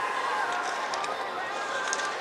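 Slalom skier's skis carving and scraping across hard snow, a steady hiss, with a few faint clicks.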